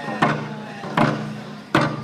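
Hand drums struck together three times, about three-quarters of a second apart, each beat ringing on with a low boom.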